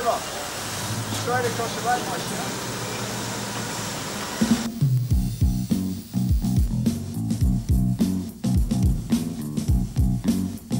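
A steady noisy hubbub with indistinct voices, cut off abruptly about halfway through by band music: a bass guitar line over a steady drum beat.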